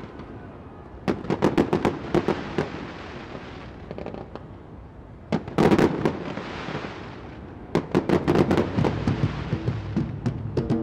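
Fireworks going off in clusters of sharp bangs and crackles. A run comes about a second in, the loudest burst a little after five seconds, and another run near eight seconds.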